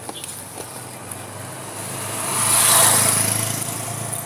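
A motorcycle passing close by on the road. Its engine and tyre noise grow louder to a peak a little under three seconds in, then fade as it moves away.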